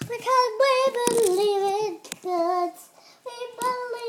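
A child singing a short wordless tune in three phrases of held, wavering notes, with a brief pause about three seconds in.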